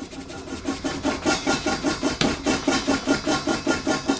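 Pink rubber eraser on the end of a wooden pencil rubbed hard back and forth on paper, a rapid scratchy rhythm of about five strokes a second.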